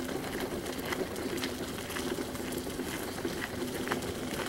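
Footsteps on a dirt-and-gravel trail, a few soft crunches at an uneven pace.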